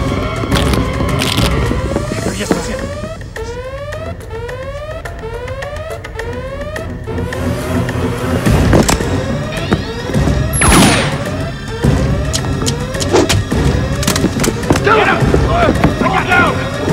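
Action-film soundtrack: electronic score carrying a short rising chirp repeated about every half second. From the middle on come loud hits and thuds of a fistfight, the hardest just before the eleventh second.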